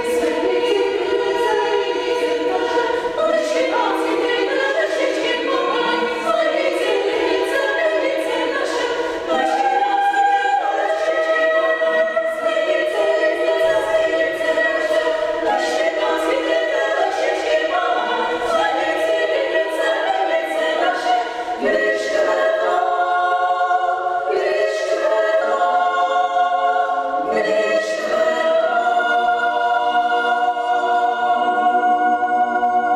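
Women's chamber choir singing a cappella, holding sustained chords in several voice parts.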